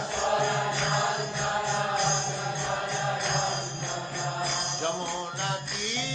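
Devotional music with a voice chanting a mantra to a melody over a steady low accompaniment.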